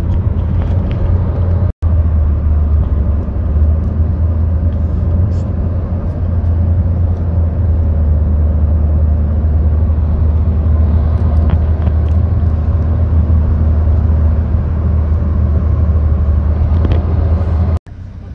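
Steady low rumble of road and engine noise inside a moving car, broken by two very brief dropouts.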